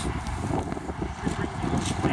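Wind buffeting a phone's microphone outdoors: a low, irregular rumble with some faint crackle.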